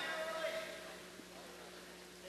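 A voice at the start, ending on one drawn-out held syllable in the first second, then faint, even room noise.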